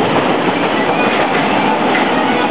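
A Paris Métro train running: a loud, steady noise of the train on the track, with faint accordion notes beneath it.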